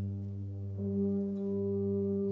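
Brass band holding a sustained low chord, with more instruments entering and strengthening it just under a second in.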